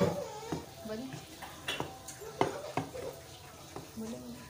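A spatula stirring and scraping thick, crumbly egg halwa in a nonstick pan, with irregular knocks against the pan. The halwa is being roasted (bhuna) in ghee, the last stage of cooking, and it sizzles faintly.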